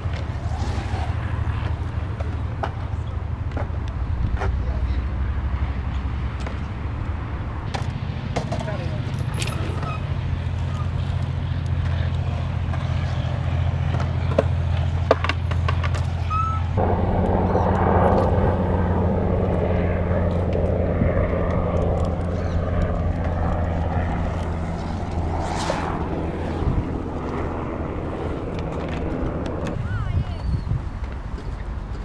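BMX bike tyres rolling on concrete, with a few sharp knocks from the bike, under a steady low rumble of wind on the microphone; the sound thickens about halfway through.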